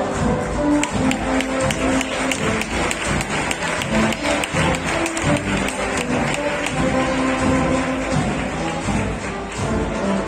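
A Spanish processional agrupación musical, a band of cornets, flutes and drums, playing a march with a steady drum pattern under a held melody.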